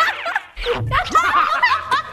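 Several people laughing and giggling together, with a short break about half a second in before the laughter picks up again.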